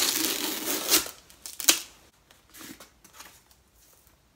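Cardboard book mailer being torn open by hand: a loud tearing for about the first second, a sharp snap a little later, then a few faint rustles of cardboard.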